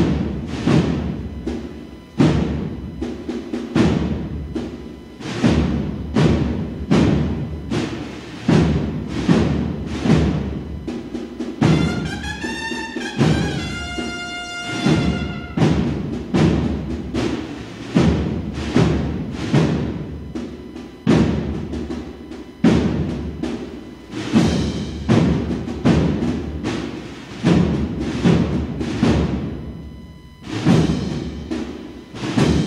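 An Andalusian agrupación musical, a Holy Week marching band of brass, winds and drums, plays a procession march. Heavy drum strokes beat regularly throughout. Near the middle, a single melodic line rises and then holds.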